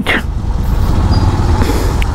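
Motorcycle engine running at low speed in crawling traffic, a steady low pulsing rumble.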